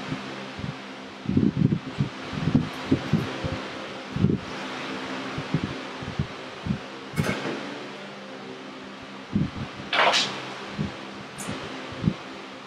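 Electric fan running steadily, a constant whooshing with a faint hum. Over it come scattered soft knocks and two louder sharp clatters, about seven and ten seconds in, the second the loudest.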